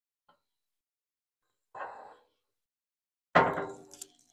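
Steel lid of a Patriot Pit offset smoker's cooking chamber being opened: a short metallic noise about two seconds in, then a sudden loud metal clank that rings briefly near the end.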